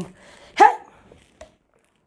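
A single short, sharp, high-pitched yelp about half a second in, followed by a faint click.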